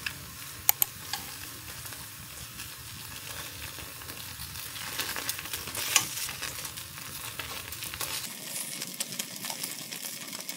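Cubes of food frying in oil in a small square pan, a steady sizzle, with a few sharp clicks of chopsticks against the pan as the pieces are turned over.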